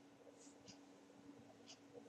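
Near silence with faint pen scratching on paper in about three short strokes, over a faint steady low hum.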